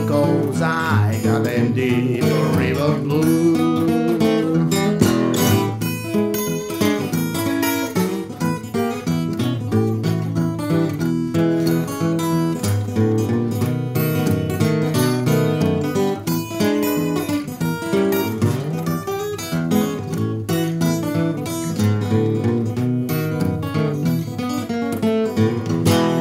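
Solo mahogany acoustic guitar playing an instrumental break, fingerpicked with a steady bass line under a picked melody in a country-blues style.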